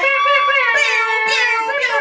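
A person's drawn-out, high-pitched vocal note, held for about two seconds with a slowly wavering pitch, like a long sung or squealed cry.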